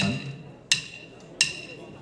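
Sticks clicked together in a steady count-in: three sharp, ringing clicks about 0.7 s apart, the first with a spoken "one".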